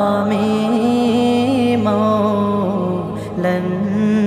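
An Islamic naat sung in a chanting style: long, gently wavering notes of the melody held over a steady low drone, with a brief dip in loudness about three seconds in.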